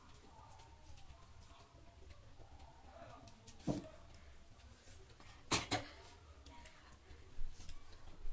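Quiet eating by hand: soft chewing and fingers working rice on glass plates, with small ticks, one sharp click a little before halfway and a louder double click a couple of seconds later.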